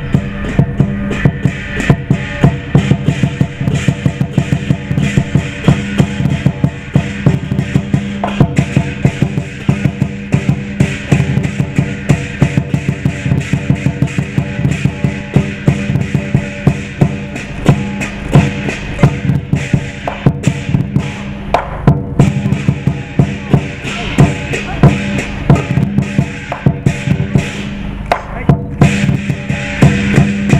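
Chinese lion dance percussion: a large lion drum beaten in a fast, steady rhythm, with cymbals and gong crashing along.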